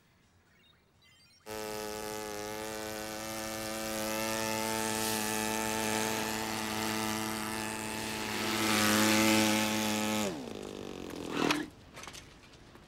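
Small motorbike engine running with a steady buzz, starting abruptly about a second and a half in and growing louder as it comes closer. About ten seconds in its pitch falls away as it slows and stops, and a short rising sound follows just before the end.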